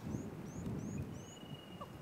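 A bird calling in the bush: a run of short, high, rising chirps about three a second. A thin steady whistle sounds through the second half, over a faint low rumble of outdoor background.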